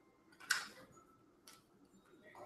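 Two short clicks about a second apart from handling a Canon compact digital camera, the first with a brief tail.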